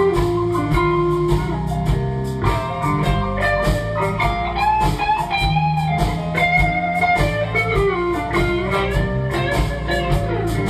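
Live blues band playing an instrumental break: an electric guitar lead with bent notes over bass guitar and drums.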